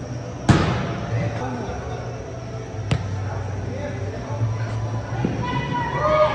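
Sharp bang of a soccer ball being struck, echoing through the indoor arena, about half a second in, and a second, fainter bang about two and a half seconds later.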